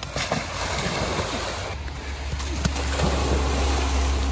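Lake water splashing and sloshing as people wade through it, with a low rumble on the microphone from about halfway through.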